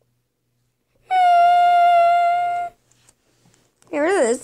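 A single steady pitched tone, starting about a second in, held for about a second and a half and then cut off. Right at the end a wavering tone that swings up and down in pitch begins.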